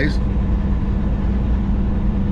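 Steady low drone of a semi-truck's diesel engine and road noise heard inside the cab while cruising at highway speed.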